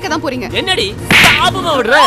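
A loud slap sound effect about a second in, lasting about half a second, as a blow lands, amid a woman's cries.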